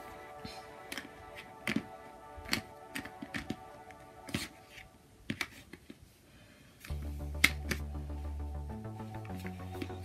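Plastic magnetic triangle blocks clicking and knocking against each other several times as pieces are tried in place, over background music whose bass line comes in about seven seconds in.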